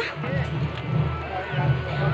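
A low, uneven rumble with faint voices in the background.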